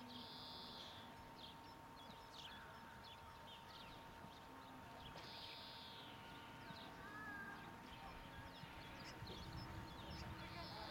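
Faint, soft hoofbeats of a Friesian horse trotting on sand, with birds chirping in the background.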